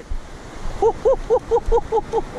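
A man laughing in a quick run of short 'ha' syllables, starting about a second in, over a steady wash of surf and wind on the microphone.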